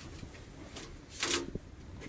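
Faint rustling of a cloth rag wiping a metal engine-oil dipstick, then a brief scrape and a click about one and a half seconds in as the dipstick is slid back into its tube.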